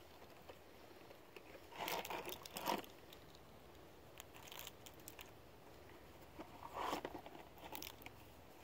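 Faint rustling and crinkling handling noises close to the microphone, in two short clusters about two seconds in and again about seven seconds in.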